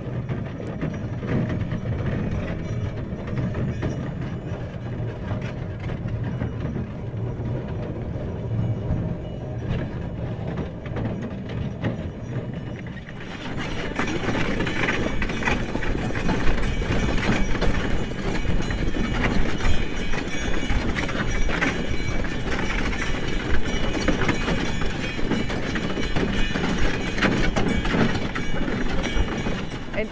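Horse-drawn sleigh under way behind two horses: hoofbeats on packed snow mixed with the rattling and creaking of the sleigh. About 13 seconds in, the sound becomes brighter, with many more sharp clicks.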